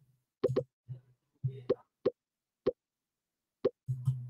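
A quick series of about six short pops at uneven intervals, like the join sound of an online quiz lobby as players enter the game.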